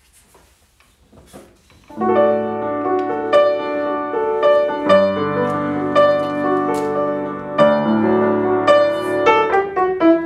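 Baldwin spinet piano being played in chords: after about two seconds of faint handling, sustained chords begin and ring on, with new chords struck every few seconds. The instrument is heard as it stands, with a few keys still to be fitted with new buttons, giving what is called quite a rich sound in the bass.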